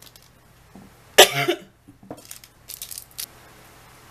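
A single loud cough about a second in, followed by a few light clicks and rustles as plastic packaging is handled.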